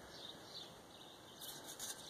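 Mostly quiet background with faint rubbing and handling noises near the end as a sheet-metal stovepipe section is moved and stood upright.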